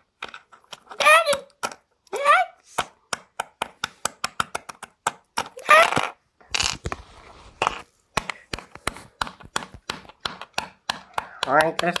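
Plastic LEGO figures and toy pieces being tapped and knocked on a wooden floor in play, a long run of sharp, irregular clicks. A few times a child's voice makes short sliding sound effects over them.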